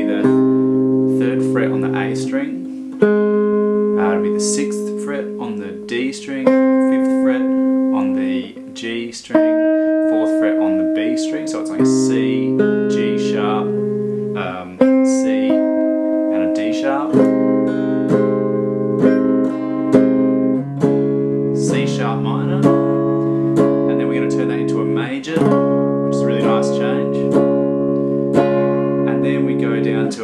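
Gibson electric guitar playing a slow chord progression, each chord struck and left ringing, changing about every two to three seconds.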